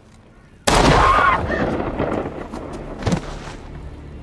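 Two handgun shots: a very loud shot with a long rolling echo about two-thirds of a second in, then a second, sharper shot about three seconds in.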